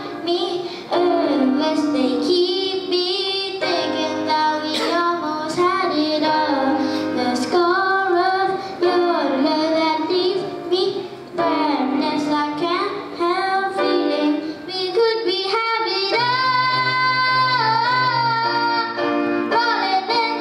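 A boy singing a pop ballad while accompanying himself on a grand piano.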